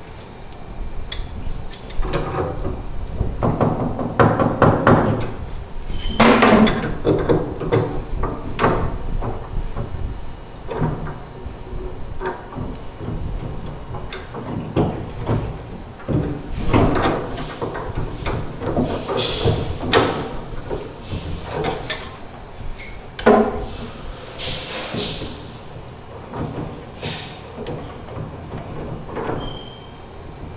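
Wrench loosening the brass pipe unions on an old three-handle tub and shower valve: irregular metal clanks, knocks and scraping.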